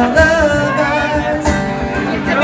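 A man singing a drawn-out, wavering note on the word "love" over strummed acoustic guitar.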